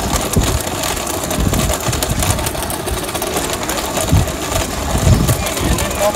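Pedal-powered bicycle blender running: the spinning rear wheel drives the blender blades, a steady mechanical whir with a few irregular low thumps.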